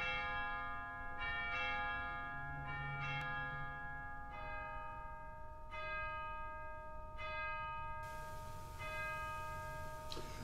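Bells chiming a slow sequence of different notes, a new stroke every one to two seconds, each note ringing on into the next.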